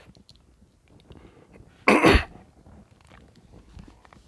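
A man's single short cough about two seconds in, with faint small clicks from handling a small metal archery release before and after.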